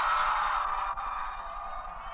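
Audience cheering and clapping after a band is announced, a steady wash of crowd noise that eases off about a second in.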